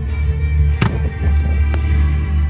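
Music with a steady deep bass, cut by two sharp firework bangs: a loud one just under a second in and a fainter one near the end.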